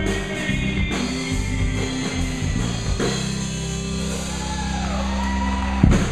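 Live band with acoustic and electric guitars and a drum kit playing an upbeat country-rock song. A long held chord near the end closes on one loud final hit as the song ends.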